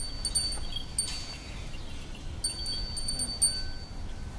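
Small brass bell on a decorated bull's neck garland jingling, in two spells of rapid ringing: one in about the first second and one near the end.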